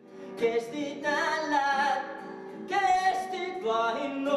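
A man singing a song in Karelian to his own acoustic guitar, with long held notes.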